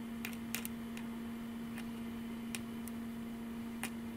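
A steady low hum with about seven faint, sharp clicks scattered through it.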